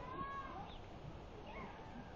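A short, high call that rises and falls in pitch, just after the start, followed by a couple of fainter similar sounds, over a steady background hum of voices and outdoor noise.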